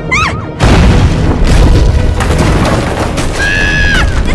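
Cartoon soundtrack: a short wavering high squeal, then a loud deep rumble that sets in about half a second in and runs under dramatic music, with a held high cry near the end.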